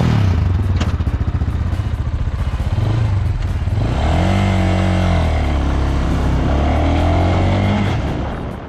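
Italika Blackbird 250's air-cooled, carbureted 250 cc motorcycle engine running, its exhaust note a rapid even pulsing for about three seconds. It then dips briefly, revs up with a rising and falling pitch around four seconds in, and runs on steadily under way.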